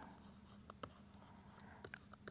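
Near silence broken by a few faint ticks of a pen writing.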